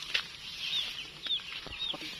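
Short high peeps repeating about twice a second from chicks, with a few sharp clicks from scissors cutting at a sponge gourd vine.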